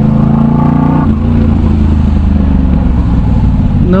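Yamaha MT-07 parallel-twin engine through an aftermarket Arashi exhaust. Its note climbs slightly, then about a second in the revs drop and it runs on at a lower, steady pitch in traffic.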